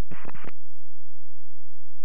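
A short burst of aviation radio static, about half a second long, at the very start, heard through the headset and radio audio feed. A faint steady low hum follows.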